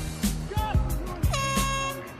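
Half-time siren at a rugby match: one steady horn-like blare starting about a second and a half in, over background music.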